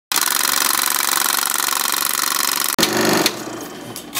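Channel-intro sound effect: a loud, rapid mechanical rattle for about two and a half seconds, broken off by a sudden hit, then a short burst of noise that fades out.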